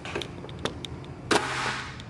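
Plastic press-down vegetable chopper dicing a tomato: a few light plastic clicks, then one loud clack about halfway through as the lid is pushed down and forces the tomato through the grid blade, followed by a short noisy cutting sound.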